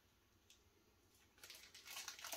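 Near silence: room tone, with one faint click about a quarter of the way in and faint soft sounds near the end.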